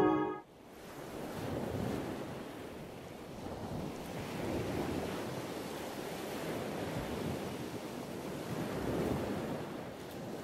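Ocean waves washing, a steady rushing wash that swells and eases every few seconds. Soft music cuts off about half a second in.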